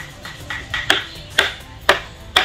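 Wooden mallet striking a carving chisel into a wood sculpture: sharp knocks about two a second, each with a short ring.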